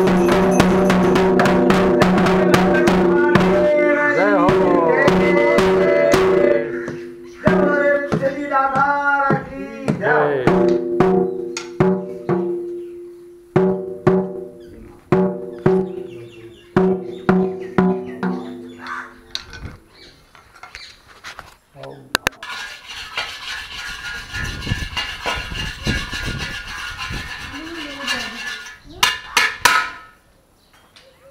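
Temple aarti percussion: a drum and a ringing bell beaten fast for about six seconds, then slowing to separate strikes about a second apart, each ringing out, until they stop about twenty seconds in. After that only quieter background noise with faint voices remains.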